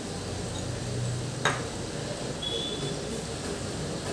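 Quiet kitchen sounds under a steady low hum: one sharp click about one and a half seconds in, then a brief high ping a second later, as fresh coriander is sprinkled over the pot.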